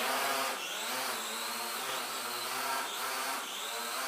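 Small toy quadcopter drone's motors and propellers buzzing steadily as it lifts off and hovers in a small room. The pitch wavers slightly as the motor speeds adjust.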